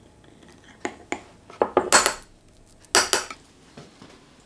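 Metal teaspoon scraping and clinking against a small glass jar as miso paste is scooped out, then against a small pan as the paste is put in. A run of short clicks and scrapes, loudest about two seconds in, with another burst about a second later.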